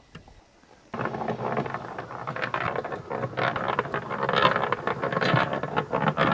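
Small cement mixer starting about a second in and turning a wet load of coco coir in calcium nitrate solution, a steady churning with irregular clatter.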